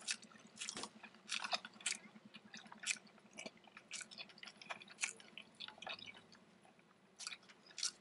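Close-miked mouth sounds of eating a Taco Bell breakfast Crunchwrap: irregular wet clicks and crunchy chewing, fainter for a second or two past the middle.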